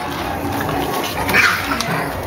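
A bulldog puppy gives one short, high cry about one and a half seconds in.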